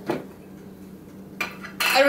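Pickle jar lid being twisted off and set down on a wooden table, with sharp clicks about a second and a half in and a louder clack near the end.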